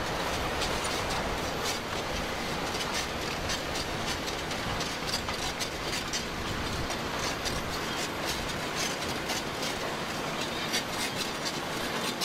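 Caterpillar D6T crawler dozer moving over volcanic sand and rock: its steel tracks clatter with many quick clanks over a steady machine rumble.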